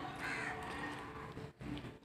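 A faint, short bird call near the start, over low background noise.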